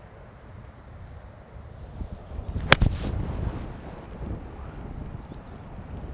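Wind rumbling on the microphone, with a single sharp strike a little under three seconds in: an eight iron hitting the ball on a chunked, fat shot that catches the ground.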